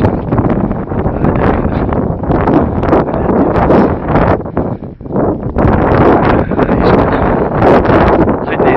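Wind buffeting the microphone in loud, uneven gusts, with a brief lull about five seconds in.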